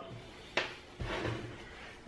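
Faint handling noises as PVC pipe shavings are picked up by hand from a miter saw table, with a light click about half a second in and a soft knock at about one second.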